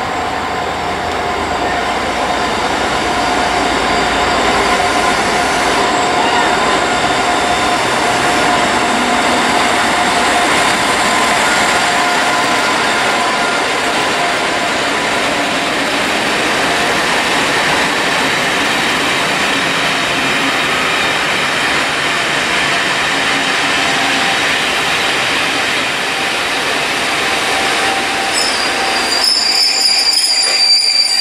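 Locomotive-hauled passenger train running slowly into a station platform, its coaches' wheels and brakes giving a steady squeal over the running noise. The sound changes abruptly near the end.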